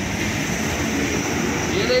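A steady rushing noise with faint voices murmuring underneath.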